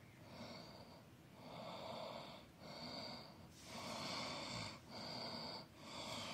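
Breathing close to the microphone: short, hissy breaths in and out, about one a second.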